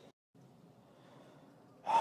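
Faint room tone, then near the end a man's loud exasperated sigh begins, a long breathy exhale.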